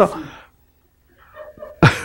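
A man's spoken phrase ends, a brief near-silent pause follows, then a sudden burst of laughter breaks out near the end.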